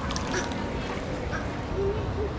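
Several short bird calls, each a brief call, spaced about half a second to a second apart over a steady background hum.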